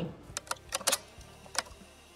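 A few short, sharp clicks, unevenly spaced over about a second and a half, followed by near quiet.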